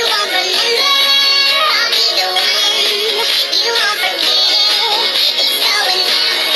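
A girl singing along to a pop song that plays through a tablet's speaker, the recorded track's vocals and beat running underneath her voice. The sound is thin, with almost no bass.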